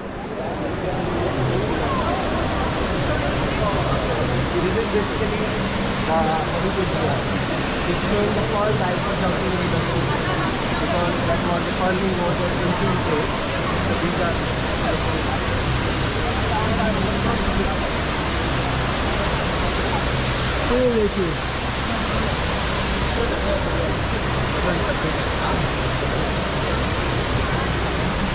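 Steady rush of water falling down Dubai Mall's multi-storey indoor waterfall, with crowd voices chattering around it.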